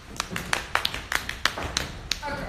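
A quick, irregular run of sharp taps, about five a second, from people dancing on a stage.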